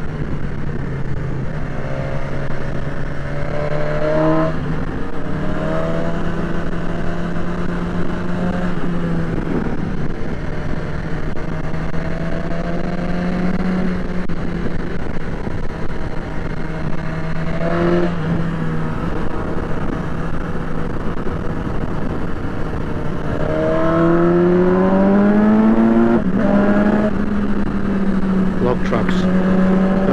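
BMW touring motorcycle engine under way on a winding road, its note climbing and dropping with the throttle and gear changes, with a strong climb about three-quarters of the way in, over steady wind and road noise.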